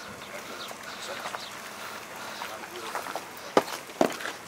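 Faint outdoor background with distant, indistinct men's voices, and one sharp click about three and a half seconds in.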